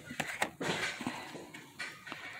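Plastic blister-card toy packages being handled and picked up: a few sharp clicks and crackles of plastic.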